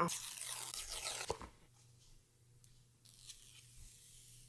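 Paper seal tab being torn off an iPhone box: a rough tearing sound for about a second and a half with a small click at the end, then near silence with faint handling of the box.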